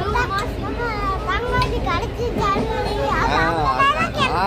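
Children's excited chatter and laughter in high voices, with a steady low rumble underneath.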